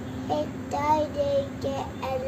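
A young child's voice singing in a sing-song way, holding a few drawn-out notes.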